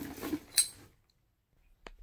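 Faint handling noise of small items with a sharp click about half a second in, then the sound drops to dead silence for about a second, as at an edit cut, before another light click.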